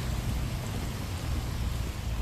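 Steady outdoor background noise: an even hiss with a low rumble underneath, no distinct events.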